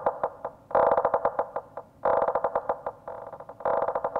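Yamaha Montage M6 synthesizer playing a preset as rapid pulsing notes. The notes come in short phrases of about a second each, separated by brief gaps, and sit in the middle range with little bass.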